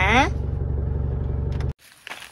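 Car engine running, heard inside the cabin as a steady low hum, which cuts off suddenly near the end.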